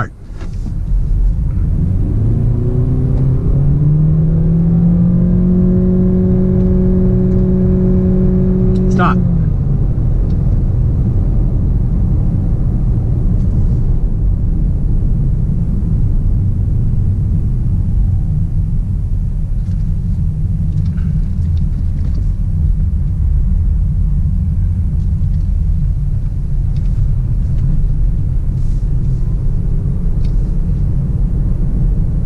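Honda Clarity accelerating hard from a standstill, heard from inside the cabin: a droning powertrain note climbs in pitch over the first few seconds, holds steady, then drops away abruptly about nine seconds in. Steady road and tyre rumble carries on after it.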